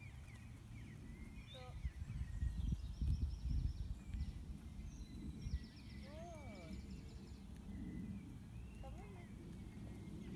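Small birds chirping and trilling in the background, with wind buffeting the microphone as a low rumble, loudest about two to four seconds in.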